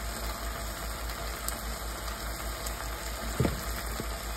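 Steady background hiss over a low hum, with one soft knock about three and a half seconds in.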